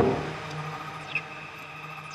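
Breakdown in a dark techno track: the full beat and bass cut out at the start, leaving a quiet low synth drone and thin high held tones. A few short falling chirps and a brief blip come about a second in.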